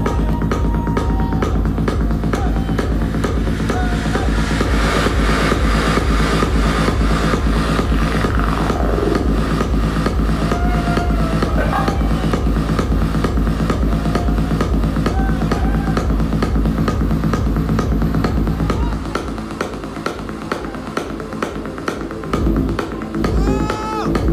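Techno DJ set played loud over a club sound system: a steady, evenly repeating kick-drum beat over heavy bass. About 19 seconds in the deep bass drops away and the music gets quieter, surging back briefly near the end.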